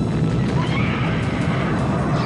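Soundtrack of a battle scene: a horse whinnying over a steady, dense low rumble, with music.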